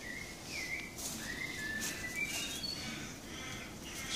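A bird singing: a run of short, clear whistled notes, some sliding up or down in pitch, that carries on through the moment.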